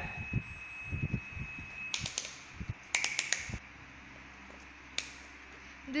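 Digital multimeter's continuity buzzer giving a steady high beep, signalling an unbroken circuit through the wire across its test leads; the beep cuts off about two seconds in. Several sharp clicks follow as the meter's dial and buttons are handled.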